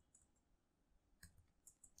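Near silence with a few faint keyboard keystroke clicks as a short comment is typed, most of them coming just after the middle.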